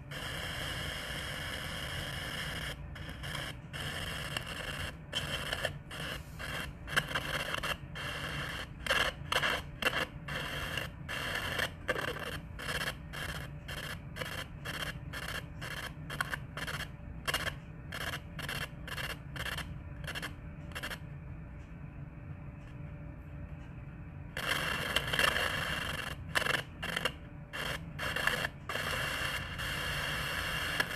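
Poltercom spirit box, a scanning radio receiver, sweeping the radio band and giving a steady hiss of static broken by short gaps about twice a second. A little past the middle the static turns duller and the breaks stop for a few seconds, then the choppy hiss returns.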